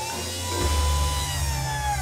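Synthesized sound effect of a robot vehicle moving off over music: a held electronic tone that swells slightly and then sinks, with a deep rumble coming in about half a second in.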